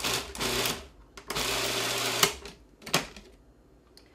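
Food processor pulsing basil leaves and pine nuts for pesto: two bursts of the motor, the second about a second long, ending in a sharp click. Another click follows about half a second later as the lid is unlocked, and then it goes quiet.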